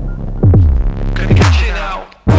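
Electronic background music: a deep bass note sliding down in pitch about once a second over a steady hum, dropping out right at the end.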